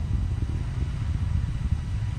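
Low, steady, uneven rumble of the ULA Vulcan rocket in powered flight, carried on the launch broadcast's audio.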